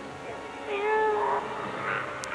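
A person's drawn-out moan, held for about a second and trailing off breathily, over background film music.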